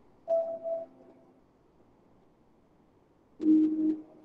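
Two short pitched musical notes, each ringing out briefly. The first is higher and comes a third of a second in. The second is lower and louder and sounds near the end.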